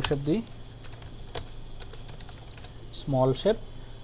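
Computer keyboard and mouse clicks, scattered and irregular, with a few words spoken at the start and again about three seconds in.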